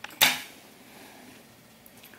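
One sharp clatter about a quarter second in, from small sewing things being handled on a glass tabletop, then faint rustling of fabric being handled.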